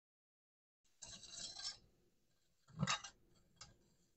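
A brief rattling scrape, then a single sharp knock a second later and a lighter click.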